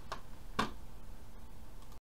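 Two sharp clicks about half a second apart, the second louder, from a hand working the computer that is recording, at the moment the recording is stopped.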